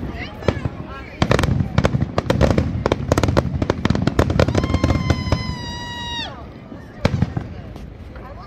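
Aerial fireworks shells bursting and crackling in quick succession, a dense run of bangs for several seconds, then one more sharp report near the end.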